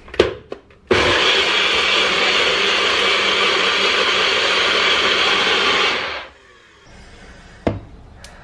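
NutriBullet personal blender motor running steadily for about five seconds as it blends a smoothie, then winding down. A couple of clicks come first as the cup is pressed onto the base, and there is a knock near the end as the cup is taken off.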